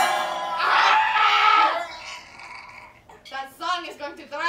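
A person screaming in a drawn-out, wavering yell for about two seconds, then a few short vocal sounds near the end.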